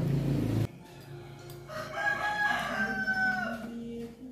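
A rooster crowing once: one long call that holds its pitch and falls away at the end. It is preceded by a low sound that cuts off suddenly about half a second in.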